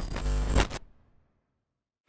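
A glitch transition sound effect: a short, harsh burst of electronic noise that stops abruptly less than a second in.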